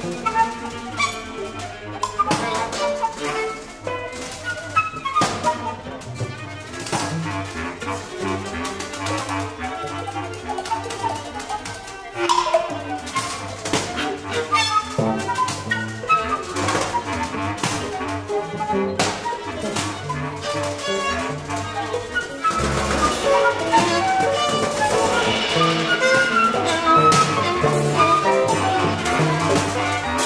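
Small acoustic ensemble of violin, viola, flute, bass clarinet and percussion improvising a soundpainting piece: many short, overlapping notes over scattered drum strikes. The music swells louder in the last few seconds.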